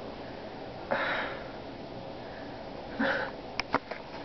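Two short breathy sniffs close to the microphone, about two seconds apart, followed by a few sharp clicks near the end.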